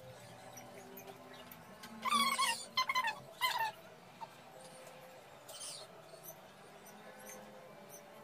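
A domestic cat meowing three times about two seconds in: one longer call, then two shorter ones close after.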